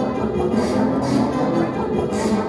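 Live avant-garde garage punk band playing: electric guitar together with keyboard and electronics, a dense, continuous sound.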